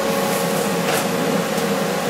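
Longevity plasma cutter running with compressed air hissing steadily through the hand torch and a steady hum from the machine, while the arc is not yet struck on the 18-gauge sheet.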